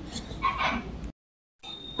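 Milk poured from a steel tumbler onto cooked rice in an aluminium pressure cooker, a quiet splashing and pattering. About a second in, the sound drops out completely for half a second before faint noise returns.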